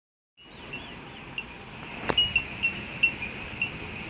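Small metal bells tinkling in short, high, ringing pings about three times a second, with one sharp click about two seconds in.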